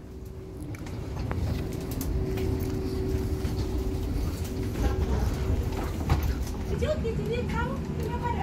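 Steady low rumble with a constant hum of aircraft and ground machinery, heard from inside an airport jet bridge. Passengers' voices chatter from about five seconds in.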